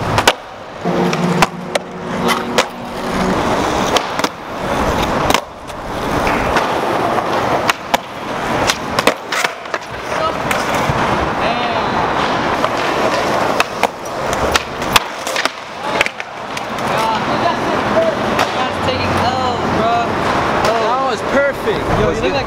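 Skateboard wheels rolling on rough asphalt, broken by many sharp clacks and slaps of the board hitting the ground as flip tricks are tried.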